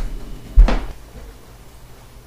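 A door shutting with a heavy thud about half a second in, after a softer knock at the start, then a low steady hum.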